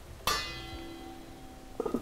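A stainless steel pot rings after a sharp knock, the ring fading over about a second. Near the end there is a second, duller clank of metal cookware.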